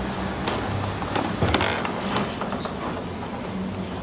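Light clinking and rattling of small metal objects: a handful of short, sharp clinks with a bright ring, at irregular intervals, over a steady low hum.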